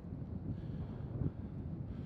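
Wind blowing across the microphone outdoors: a steady low rumble with no distinct events.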